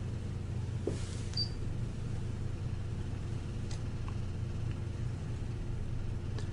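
Steady low electrical hum over room noise, with a few faint clicks and one short high-pitched beep about a second and a half in.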